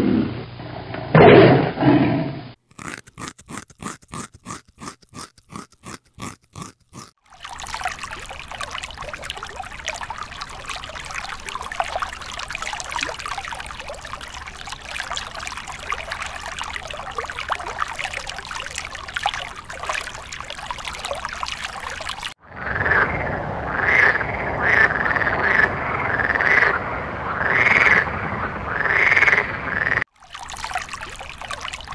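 A tiger's roar ends about two and a half seconds in. Then comes a pulsing call about three times a second for some five seconds, a steady crackling hiss for about fifteen seconds, and, in the last third, a string of short calls about once a second.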